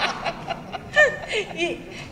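People on a stage panel chuckling and laughing softly into handheld microphones, in short scattered bursts, with a spoken word near the end.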